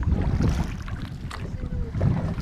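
Wind rumbling on the microphone over water splashing and lapping around an inflatable rubber rowing boat, with a few short knocks and faint voices in the background.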